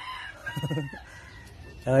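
A rooster crowing faintly in the background.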